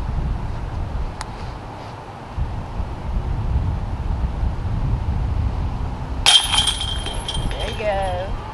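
Wind rumbling on the microphone, then about six seconds in a putted disc strikes a metal disc golf basket: a sharp metallic clank with chains jingling and ringing for about a second.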